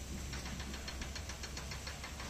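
Faint steady low hum, with a rapid, high, even ticking of about nine pulses a second that starts about a third of a second in.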